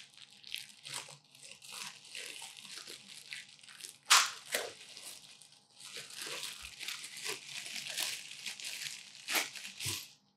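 Clear plastic bag crinkling and rustling as a handheld speaker mic with a coiled cord is worked out of it, with one sharp crackle about four seconds in and a denser run of crinkling near the end.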